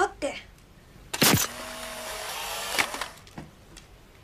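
Instant camera taking a picture: a sharp shutter click, then its motor whirring steadily for about a second and a half as it ejects the print, ending with a click.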